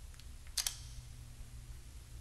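Two quick sharp clicks about half a second in, from a mobile phone being handled as a call ends, over a faint steady room hum.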